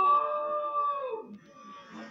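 A person's long, drawn-out cry, slowed down in slow-motion playback, holding one pitch for about a second and then sliding down and dying away. It is heard through a TV speaker.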